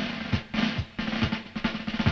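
Soundtrack music: a drum break of quick snare and bass drum hits.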